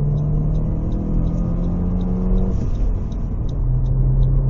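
Saab 9-3's 2.0-litre turbocharged four-cylinder (B204) engine heard from inside the cabin under hard acceleration. Its steady note breaks off about two and a half seconds in and picks up again at a lower pitch, as at an upshift.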